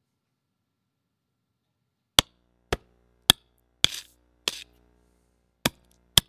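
A machine-predicted sound track of drumstick hits: six sharp, separate hits starting about two seconds in, two of them followed by a brief scratchy noise. It is assembled from pasted snippets of real drumstick recordings, timed by a neural network to the collisions it sees in the silent video.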